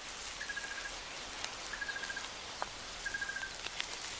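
Quiet nature ambience with an insect chirping: three short, evenly pulsed trills at one pitch, a little over a second apart, over a faint steady hiss, with a couple of faint ticks.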